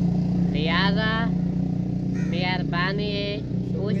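A steady low engine drone, with a man's voice speaking briefly over it twice.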